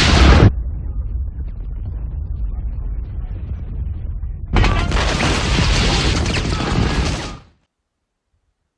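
Booming blast sound effects: a loud blast that cuts off about half a second in, a low rumble, then a second loud blast from about four and a half seconds that stops suddenly near the end.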